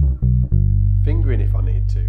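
Precision-style electric bass playing the last notes of a descending G major 7 arpeggio, fingerstyle. Two short low notes are followed, about half a second in, by one long held low note that rings on.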